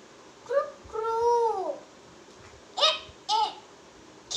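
A young boy's high voice reciting in drawn-out, sing-song syllables: a short syllable, then a long one that rises and falls, then two quick short ones.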